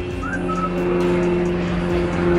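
Background music: steady held low notes with a short high tone that rises and then holds, early on.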